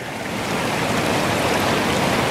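Shallow alpine mountain stream running over stones close by, a steady rush and babble of water.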